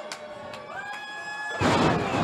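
Long drawn-out whoops and a few claps from the crowd while a wrestler stands on the top rope. About one and a half seconds in comes a sudden loud thud as his elbow drop lands on his opponent on the ring mat, and the crowd erupts.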